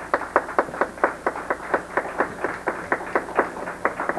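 Steady, even hand clapping in a quick rhythm, about five claps a second.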